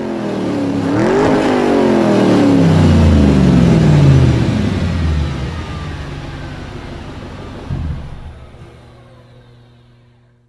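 Car engine revving: its pitch climbs briefly about a second in, then falls steadily over the next few seconds as the sound fades away.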